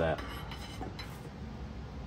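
A few light clinks as a carbon fiber rod is laid down against aluminum kit parts, followed by faint handling noise.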